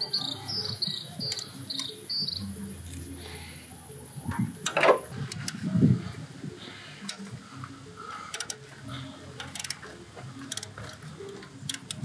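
Ratcheting wrench loosening steel EGR pipe bolts: scattered clicks and metal knocks, the sharpest about five seconds in. A few high chirps run through the first two seconds.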